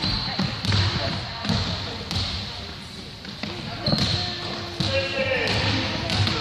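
Basketball bouncing on a wooden gym floor, with voices calling out and echoing in the hall.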